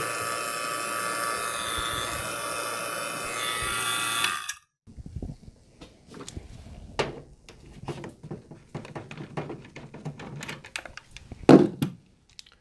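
CPS 4 CFM vacuum pump running steadily on a mini-split line set pulled down to about 140 microns, then stopping abruptly a little over four seconds in. After it, light clicks and knocks from hands working the brass service-port valves and hose fittings, with one louder knock near the end.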